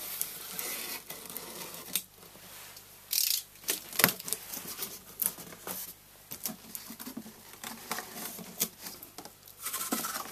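A cardboard box being opened by hand: a utility knife cutting through packing tape, then the cardboard flaps folded back, with irregular scraping and rustling and a sharp knock about four seconds in.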